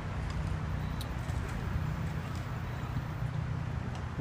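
A steady low machine hum, with soft footsteps on dirt.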